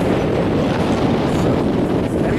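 Wind rushing over the camera's microphone as the chair-swing tower ride spins high in the air, a steady loud rumble.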